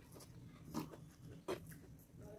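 Faint close-miked eating sounds: a mouthful of fried rice being chewed, with two short wet smacks a little under a second apart.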